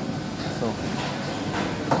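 Steady running noise of commercial kitchen equipment, with a brief sharp sound near the end.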